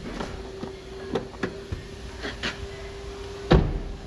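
A few light clicks from a car's interior being handled, then one loud, sharp thump about three and a half seconds in, typical of a car door shutting.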